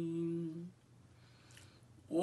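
A woman's unaccompanied voice holds the last sung note of a hymn line, a steady low note that stops about two-thirds of a second in. Near silence follows, with a faint breath near the end before the next line begins.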